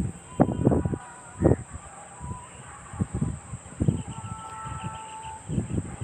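A cast net loaded with small fish being handled and set down on dry ground: a string of irregular soft thuds and rustles as the weighted net and its catch hit the dirt.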